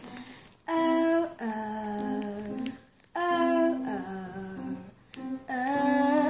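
A girl singing unaccompanied, a wordless melody of held notes in four short phrases, with brief breaths between them about half a second, three seconds and five seconds in.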